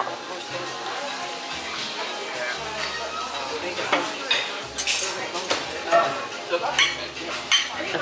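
Metal knife and fork clinking and scraping on a plate as food is cut, with several sharp clinks in the second half.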